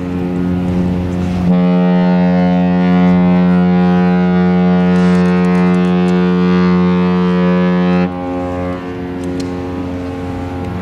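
Cruise ship Mein Schiff 6's horn. The echo of an earlier blast fades at the start, then one long, deep, steady blast begins about a second and a half in and cuts off about eight seconds in, echoing on after it stops.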